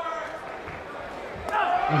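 Crowd noise in a boxing arena, with one sharp knock about one and a half seconds in.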